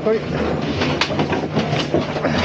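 Gondola lift machinery in the loading station: a steady low hum with a quick run of clacks and knocks as the cabin rolls through the terminal.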